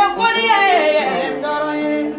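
A woman singing a melody in long held notes that bend and slide in pitch.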